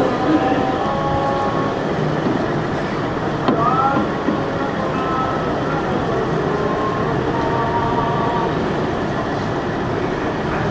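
Continuous loud background noise with faint, indistinct voices mixed in, and a brief click and short rising squeak about three and a half seconds in.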